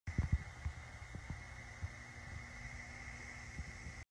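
Faint VHS tape playback noise: steady hiss with a thin high whine, and a few low thumps near the start.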